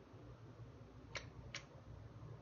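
Near silence: a faint, steady low hum with two light clicks a little after a second in.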